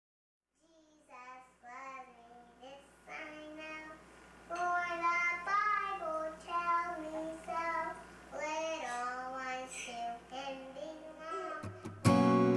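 A high voice singing a slow melody alone, unaccompanied, with held notes, starting softly and growing louder. A strummed acoustic guitar comes in right at the end.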